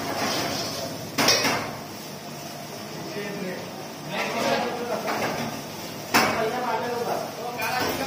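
Commercial kitchen ambience: staff talking in the background amid the clatter of steel dishes and utensils, with two sharp clanks, one about a second in and a louder one about six seconds in.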